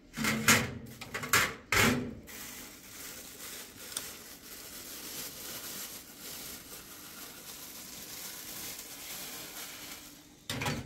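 Tea glasses knocked and clinked onto a metal tray several times, then a steady rush of running tap water at the kitchen sink from about two seconds in.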